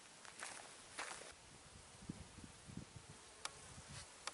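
Very quiet open-air ambience with a faint insect buzzing briefly, twice in the first second and a half, and a small click near the end.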